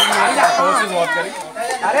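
A crowd of children talking and calling out over one another, with several voices overlapping throughout.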